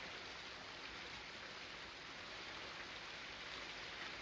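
Steady rain falling, heard as a soft, even hiss.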